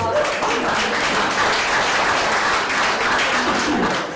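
Audience applauding, a steady spell of clapping that dies away near the end.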